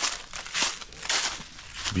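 Footsteps crunching through dry fallen leaves, about two steps a second.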